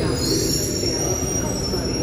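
Berlin S-Bahn class 480 electric train pulling in along the platform, a low rumble with a steady high-pitched squeal that sets in just after the start as it slows to a stop.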